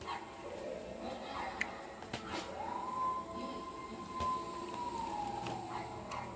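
A thin high tone that glides up, holds for about three seconds and then slides down, with a few short clicks and taps around it.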